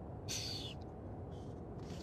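Steady low rumble inside a moving car's cabin, with a short breathy hiss about a third of a second in.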